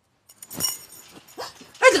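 A woman's short gasps and strained, choked vocal sounds, as of someone being throttled, starting about half a second in.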